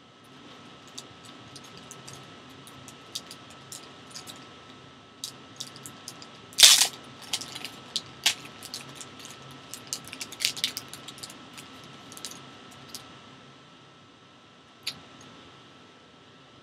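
Clear plastic wrap crinkling and crackling as hands peel it off a stack of trading cards, in scattered sharp crackles with one much louder crackle about six and a half seconds in.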